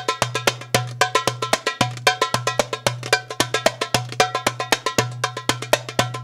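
Solo darbuka (metal goblet drum) played in a fast rhythm: deep ringing bass strokes about twice a second under a rapid run of sharp, bright taps.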